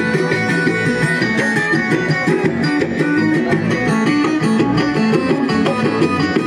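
Live amplified band playing Tuareg music: guitars and banjo plucking a busy, steady run of notes through the PA.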